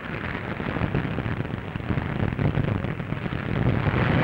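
Dense crackling noise of the Hindenburg airship burning, on an old newsreel soundtrack, growing louder toward the end.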